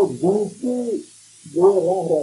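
A pigeon cooing: two phrases of rising-and-falling low notes, the second starting about a second and a half in.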